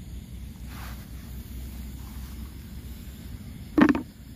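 Low steady background rumble, then near the end one short, loud knock: a snail's shell dropped into a plastic bucket.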